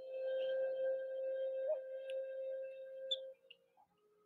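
A single bell-like chime tone, like a singing bowl, starting suddenly and holding one steady pitch with several higher overtones for about three seconds before it stops.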